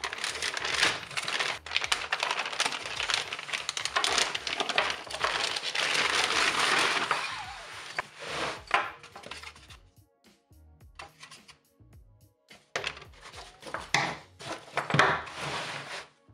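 Thin clear plastic packaging bag crinkling and rustling loudly as a canvas messenger bag is worked out of it, for about the first eight seconds. After a short quieter pause, more rustling and handling of the canvas bag and its cardboard tag near the end, with music playing underneath.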